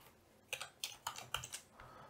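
Faint typing on a computer keyboard: a short run of quick keystrokes starting about half a second in.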